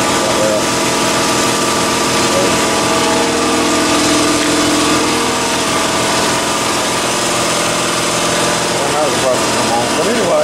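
Water and degreaser in a homemade hot tank churning and bubbling hard as compressed air is driven through it, with a small motor running steadily and a hum of several tones.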